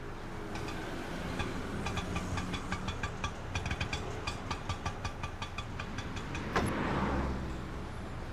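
Auto rickshaw's small engine running as it drives up and pulls in, with a quick rattling tick of about four a second through the middle. There is a single sharp knock about six and a half seconds in, followed by a brief rush of noise.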